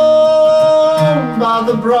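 A man singing with his own acoustic guitar. He holds one long steady note that ends about a second in, then sings on to the next phrase over the strummed guitar.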